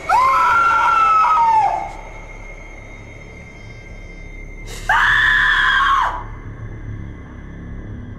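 A woman screaming twice: a long scream of nearly two seconds at the start, then after a pause of about three seconds a shorter scream of about a second, with a low music bed beneath.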